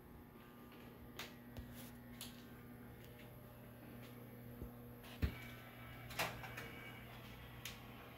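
Quiet room with a low, steady electrical hum, broken by a few faint clicks and knocks. The sharpest knock comes about five seconds in.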